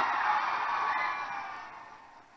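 Large stadium crowd cheering and applauding, fading away over about two seconds.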